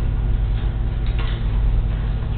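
A few light clicks, about half a second in and again just after a second, from councillors pressing their voting-console buttons during a vote, over a steady low hum.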